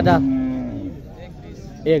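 A cow mooing: one long, steady low moo that fades away over about a second.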